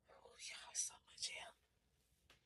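A woman whispering a few words, about a second and a half long, with no voice pitch in it.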